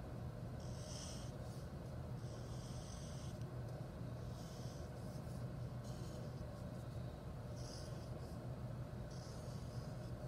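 Black felt-tip marker drawing long strokes on paper: about five faint, scratchy swishes, each under a second long, over a steady low hum.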